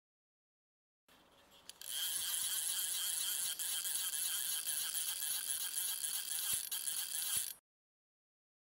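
Channel-intro sound effect: a dense, high jingling rattle. It starts faintly about a second in, swells to full level a second later, holds steady and cuts off sharply near the end.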